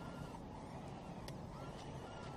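An electric RC crawler's motor whines faintly and wavers in pitch as the truck pushes through deep mud on Super Swamper-style tyres. A steady low rumble runs underneath, with a few faint ticks.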